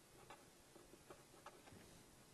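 Faint pen strokes on paper while writing by hand: a few short, light scratches and ticks spaced irregularly.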